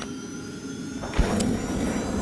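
Logo sting sound effect: a swelling whoosh, then a sudden low hit about a second in with a bright chime ringing over it.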